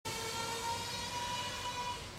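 A steady, high-pitched mechanical whine with many overtones from a small motor, with a lower tone dropping out about a third of the way in.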